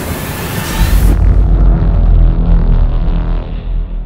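Cinematic logo-sting sound effect: a hissing rush, then about a second in a deep boom whose low rumble slowly dies away.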